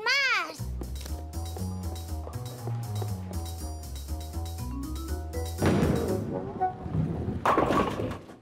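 Background music with a bouncing bass line, then two noisy crashes in the last couple of seconds: a bowling ball striking and scattering pins.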